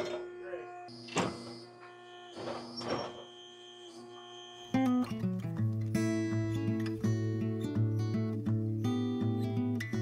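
Two sharp knocks in the first half. About halfway through, strummed acoustic guitar music comes in suddenly and much louder, and carries on.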